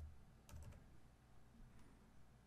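Faint keystrokes on a computer keyboard: a few key clicks about half a second in, and one more near the end.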